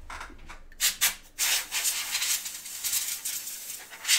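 A dusty trading card being cleaned: two brief scuffs about a second in, then a rough, hissing rub that goes on to the end.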